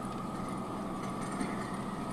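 Steady engine and road noise heard from inside the cab of a moving vehicle.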